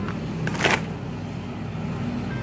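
A plastic bag of wrapped chocolates crinkling briefly once, a little over half a second in, as it is dropped into a shopping cart, over a steady low hum.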